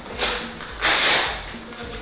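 A blood-pressure cuff's hook-and-loop fastener being torn apart twice: a short tear, then a longer, louder one.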